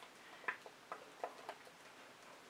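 Faint, irregular light taps and clicks, about six in just over a second, from hands and a small tool working at a painted canvas.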